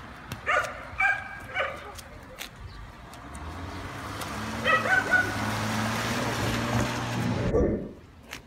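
A dog barking in short calls, a few times in the first couple of seconds and again about five seconds in, over a low engine hum that swells as a vehicle passes. All of it cuts off suddenly near the end.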